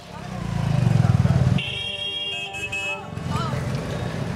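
City street traffic: a motor vehicle's engine rumbles, swelling loudly for about a second and a half and then cutting off abruptly, followed by a vehicle horn sounding with a steady, held tone.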